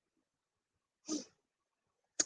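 Near silence, broken about a second in by one short, breathy vocal sound from a woman, a quick breath or sniff.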